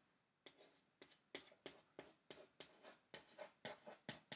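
Chalk writing on a small chalkboard: a faint run of short scratchy strokes, about three a second, starting about half a second in.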